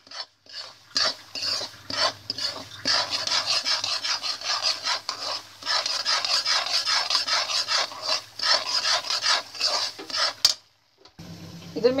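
A spoon scraping and stirring semolina around a pan in rapid, continuous strokes while the semolina is dry-roasted for halwa until it changes colour. The scraping stops a little before the end.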